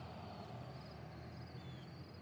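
Faint outdoor evening ambience with crickets chirping in a steady, rapid, high pulse, and a brief high note a little before the end.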